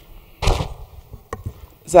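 A single short, loud pop about half a second in, like a microphone being bumped or switched on over the chamber's sound system, followed by a couple of faint clicks; a voice starts calling the roll just at the end.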